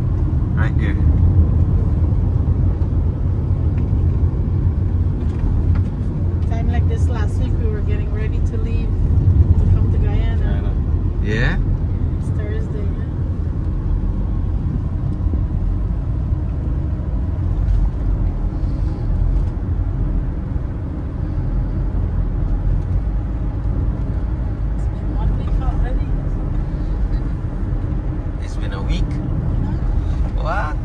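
Steady low rumble of road and engine noise inside a moving car's cabin, with brief faint voices at times.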